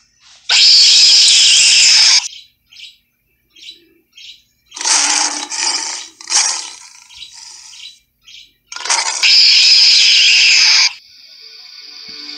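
Lion roar sound effects in three loud, harsh bursts of one to two seconds each, with short fainter snarls between them.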